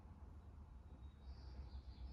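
Near silence: room tone with a steady low hum, and a faint, thin high chirp-like tone starting about a second in.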